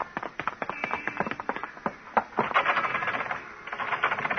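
Radio-drama sound effect of two men's footsteps, hard shoes clicking quickly on pavement, several steps a second, turning into a denser patch of clicking about two and a half seconds in.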